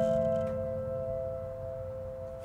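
Soft piano music: a chord struck just before keeps ringing, slowly dying away.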